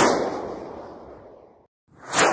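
Title-card sound effect: one heavy booming hit at the start, ringing out in a long echoing decay that fades away about a second and a half later.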